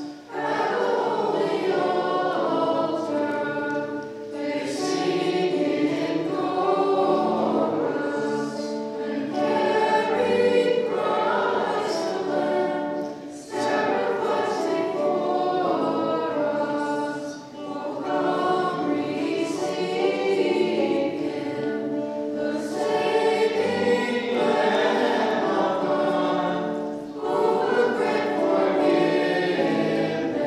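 Choir singing a Maronite communion hymn in sustained phrases of several seconds, with short breaths between them.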